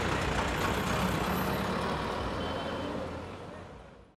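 Roadside traffic ambience: a steady wash of street and vehicle noise that fades out toward the end.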